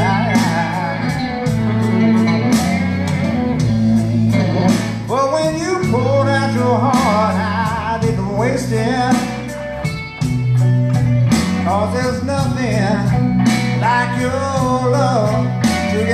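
Live band playing a slow country-soul ballad: bass walking through held notes under drums, with bending, wavering lead lines from voice and electric guitar above. The guitar is an Ernie Ball Music Man EVH electric played through a Zoom G5n straight into the mixing board.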